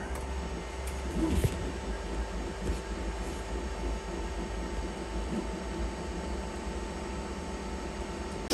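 Creality Ender 3 V3 SE 3D printer running as it lays down the first layer of a print: a steady hum of its fans and motors, with a low rumble underneath and a few faint ticks.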